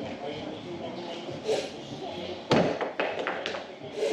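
Thrown hatchet hitting a wooden target board with a sharp thud about two and a half seconds in, then a quick run of clattering knocks as it drops and bounces on the plywood lane floor without sticking. A lighter knock comes a second earlier.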